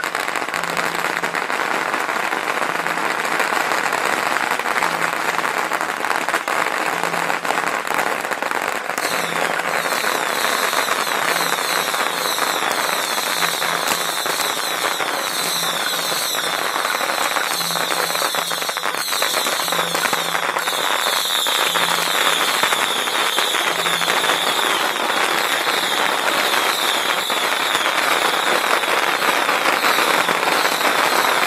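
Strings of red paper firecrackers going off in a dense, continuous crackle of rapid bangs. A higher sizzling layer joins about nine seconds in.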